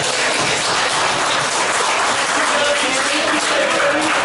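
An audience in a hall applauding steadily, with voices talking over the clapping.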